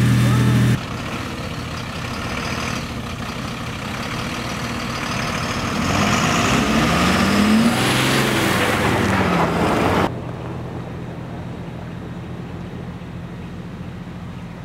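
Steady low hum of a fire engine's motor running, under a louder hiss with a man's voice in the middle stretch. The sound drops abruptly to a quieter steady hum about ten seconds in.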